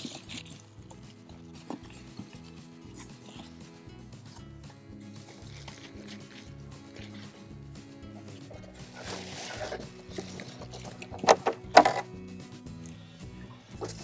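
Soft background music runs throughout. Near the end come a rustle and then two short, sharp squeaks as a polystyrene foam packing end cap is worked loose from the plastic-wrapped machine.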